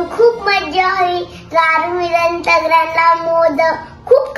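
A young girl singing, holding steady notes with a short break about a second and a half in.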